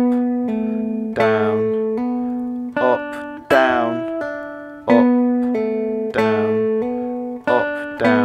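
Three-string cigar box guitar with a pickup, playing a clean single-note phrase around the 10th and 12th frets: picked notes joined by pull-offs and hammer-ons, each note ringing and fading before the next, the phrase repeating.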